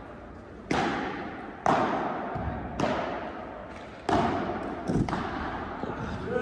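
Padel rally: the ball struck by rackets and bouncing on the court, a sharp pop about once a second with a quick double near the end, each one ringing out with the long echo of a large indoor hall.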